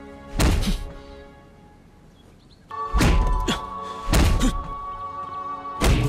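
Film score music with four heavy thuds spread over the six seconds, the hit effects for palm pushes against a large wooden tub of water.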